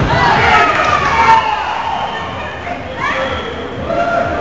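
Several players' voices calling out and shouting at once, echoing in a gymnasium, with a couple of short thuds about half a second and just over a second in.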